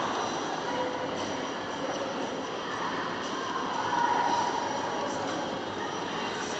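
Steady ambience of an indoor swimming pool hall: a constant wash of water and air-handling noise with a few faint steady tones, and no sudden sounds.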